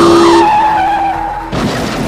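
Car tyres screeching in a skid over a steady blaring tone that cuts off about half a second in, then a sudden crash impact about a second and a half in: the sound of a car accident.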